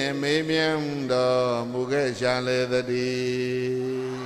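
A man chanting a Buddhist recitation in long, held melodic notes, with short breaks for breath about one and two seconds in.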